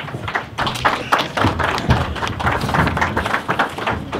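An irregular clatter of taps and knocks, several a second, with a low rumble underneath, as people get up from a table and move about.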